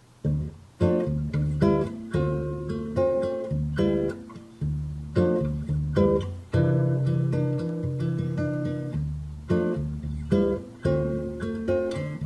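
Recorded guitar loop playing back from an audio sample at 55 BPM: picked notes and chords with sharp attacks that ring and fade, a new note about every half second.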